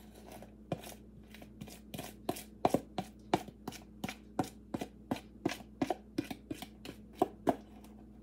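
A utensil scraping and knocking against the inside of a glass mixing bowl as brownie batter is cleared out into a baking pan, in quick, regular strokes about three a second.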